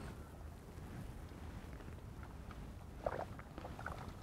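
Faint outdoor background with a low rumble, and a few small clicks and soft ticks about three seconds in and again just before the end.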